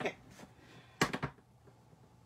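A short cluster of sharp plastic clacks about a second in, from a stamp ink pad case being handled and opened.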